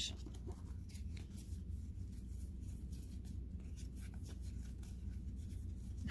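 Faint rustling and light ticking of a stack of football trading cards being handled and flipped through, card edges sliding against each other, over a steady low hum.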